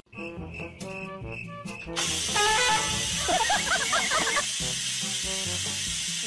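Electric pressure rice cooker venting steam: a steady hiss that starts suddenly about two seconds in and runs for about four seconds.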